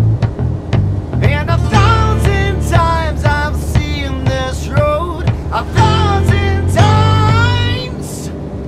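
A band playing a pop song with a male lead singer over bass guitar, keyboard and a drum beat. The beat and bass play alone at first; the singing comes in about a second in and carries on, with a short pause before the last line.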